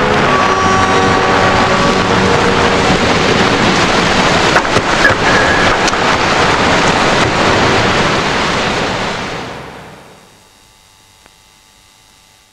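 A loud, steady rushing noise with no clear pitch, like surf or wind. It fades out over the last few seconds and is gone about ten seconds in.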